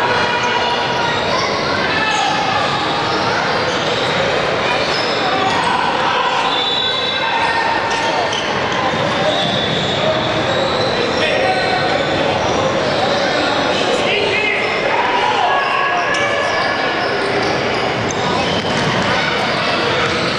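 Gymnasium din at a boys' basketball game: many overlapping voices of players and spectators echoing in the hall, with a basketball bouncing on the hardwood floor, steady throughout.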